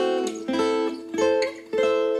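Acoustic guitar playing a chain of four chords struck about half a second apart, each ringing briefly before the next: A minor triad shapes with the sixth added, on the top strings.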